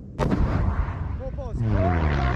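Mk 153 SMAW 83 mm shoulder-launched rocket launcher firing: one sudden blast about a fifth of a second in, followed by a long low rumble that carries on.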